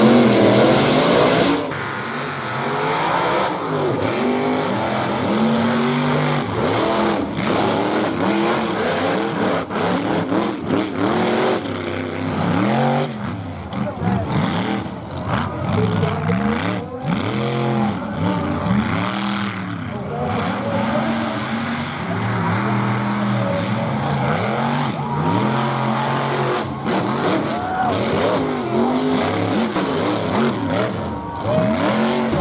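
Mega mud trucks' engines revving hard over and over, the pitch climbing and dropping with each burst of throttle as they race a dirt course. A loud rush of noise fills the first second or so.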